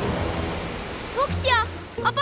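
Cartoon sound effect of a rushing wave of flood water, a steady wash that fades over the first second or so, followed by two short high cries from a character.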